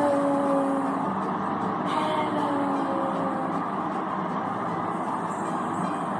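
Steady background noise with no speech, with faint drawn-out tones in the first second and again about two to three seconds in.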